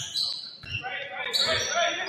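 Basketball being dribbled on a hardwood gym floor, a few bounces about two-thirds of a second apart, with sneaker squeaks and voices echoing in the gymnasium.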